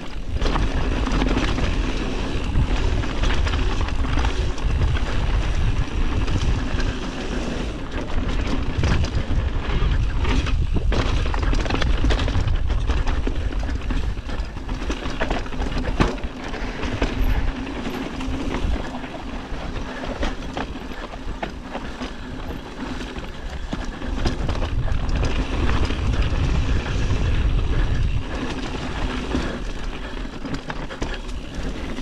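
Mountain bike rolling fast over dirt, roots and rock slabs: continuous tyre and trail noise with the bike rattling and knocking over the bumps, under a low rumble. One sharp knock about halfway through stands out as the loudest.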